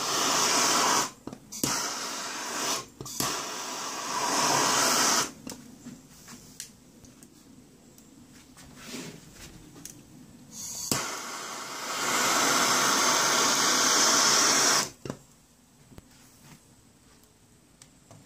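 Hand-held gas torch flame hissing in several short bursts of one to two seconds, then quieter, then one long burst of about four seconds from about eleven seconds in, as the flame is played over a deer skull to scorch it.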